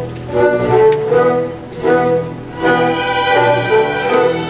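A student orchestra's bowed strings, violins and cellos, playing sustained chords that swell and fade about once a second. About two-thirds of the way through the sound grows fuller and brighter.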